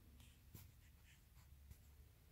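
Near silence: room tone with a low hum and a few faint clicks and rustles.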